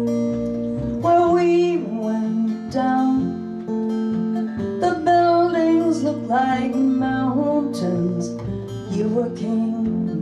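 Acoustic guitar strummed with an upright bass, playing a live folk-jazz song.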